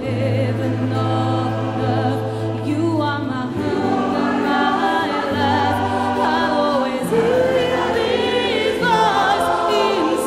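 Mixed choir and a female lead singer performing a slow ballad with acoustic guitar, electric guitar and keyboard accompaniment. The lead voice sings with vibrato over held low notes that change every few seconds.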